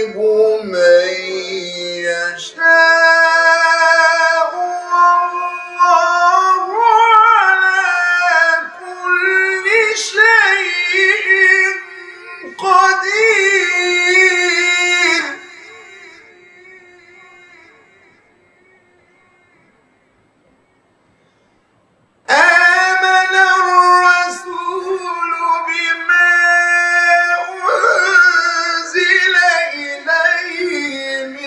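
Solo male Quran recitation in the melodic mujawwad style: long ornamented phrases with wavering turns and held notes. One phrase dies away slowly about 15 seconds in, there is a brief pause, and a new phrase begins about 22 seconds in.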